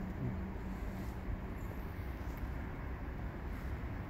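Steady low outdoor background rumble with no distinct events, and a low hum that fades out about a second in.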